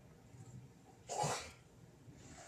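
A person's single short, noisy burst of breath about a second in, like a sneeze.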